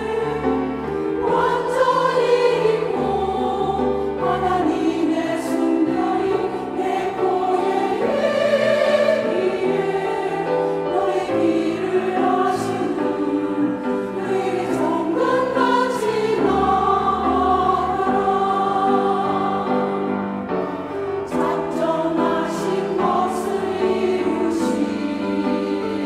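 A women's church choir singing a sacred anthem in Korean, holding sustained notes in several voices.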